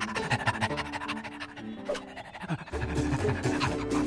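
A cartoon dog panting quickly over background music, with the music's bass coming in about three seconds in.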